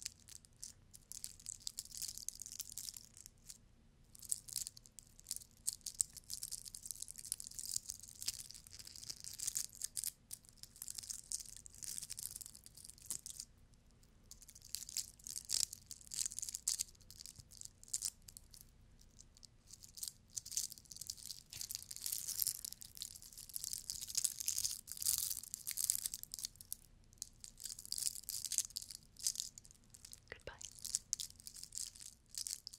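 Glitter-covered Easter egg decorations rubbed and scratched close to the microphone, making crisp, fine crackling scratches that come in bursts with a few short pauses.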